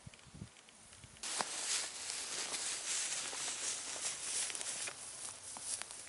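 Footsteps and rustling in dry meadow grass, a steady crackly rustle dotted with small clicks that starts abruptly about a second in.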